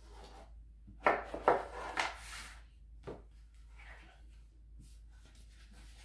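Cardboard packaging scraping and rubbing as the watch's inner tray is slid out of its box and opened, in a few loud bursts about a second in, then a short tap about three seconds in.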